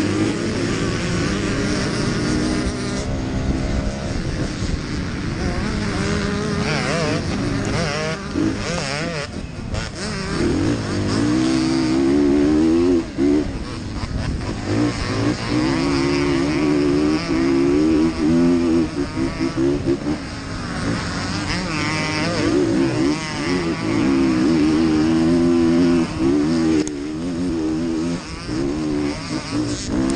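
Off-road motorcycle engine heard close up through a helmet camera, revving up and down over and over as the rider works the throttle and gears at racing pace, with a few brief drops in throttle midway.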